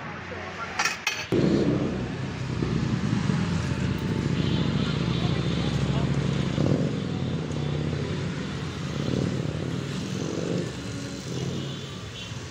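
A few sharp metal clinks about a second in. Then a vehicle engine starts running close by, loud and low, its pitch rising and falling with several revs.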